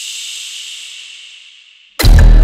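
A woman's long whispered "shhh", a breathy hiss that slowly fades away and stops just before the music comes in.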